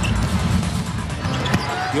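A basketball being dribbled on a hardwood court, with arena crowd noise and background music underneath.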